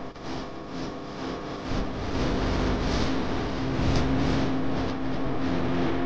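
Car driving along a road: steady engine and tyre noise, with a short drop in level right at the start.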